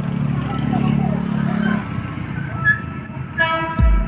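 A motor vehicle's engine running nearby, a low steady drone that fades out about two seconds in. Near the end, background music with a heavy bass beat begins.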